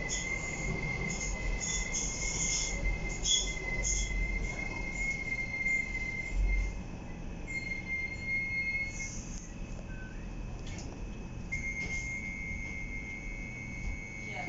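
Docklands Light Railway B07 stock train on the move, heard inside the carriage: a low rumble of wheels on rail under a thin, steady high squeal that stops and starts several times. Sharper high squeaks come over the first few seconds.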